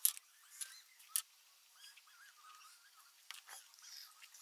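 A few small clicks and taps of a pen being put down and handled on an open notebook on a wooden desk, the sharpest right at the start and another about a second in.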